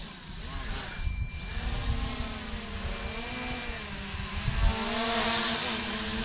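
MJX Bugs 3 quadcopter's brushless motors and propellers whirring in flight. The pitch wavers up and down as the throttle changes, and the sound grows louder toward the end as the drone comes close.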